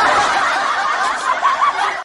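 Canned laughter: many people laughing at once, starting abruptly and cutting off sharply at the end.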